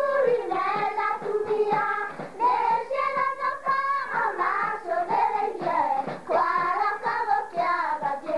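A group of girls singing a song together over a steady rhythmic beat.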